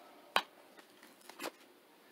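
Tarot cards being handled and set down on the spread. There is one sharp click about a third of a second in, and a fainter short brush about a second and a half in.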